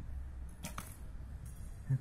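A recurve bow being shot, heard as two sharp snaps in quick succession about two-thirds of a second in.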